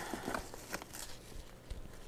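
Faint rustling and light crackling of radish plants being handled: leaves and roots pulled and turned in the hands, with a few small clicks.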